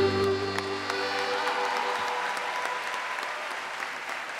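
Live band's closing chord dies away within the first second and a half, over audience applause that carries on.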